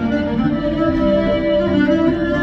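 Fiddle playing an instrumental passage of a song in long bowed notes, with no singing.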